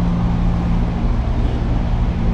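A steady, low mechanical hum with a constant droning tone.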